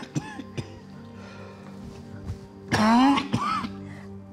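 An old man coughing and clearing his throat in a fit, with a loud strained cough about three seconds in, over soft background music with long held notes.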